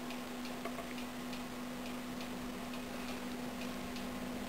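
Faint, light ticking, about two clicks a second, over a steady low hum.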